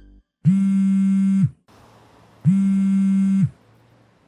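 Mobile phone ringing: a steady, buzzy electronic ring tone that sounds for about a second, twice, two seconds apart.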